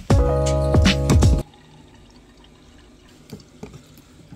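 Background music with a beat cuts off suddenly about a second and a half in. After it, a wall-mounted bottle-filling station runs faintly, its stream of water pouring into a container, with a few small drips and clicks.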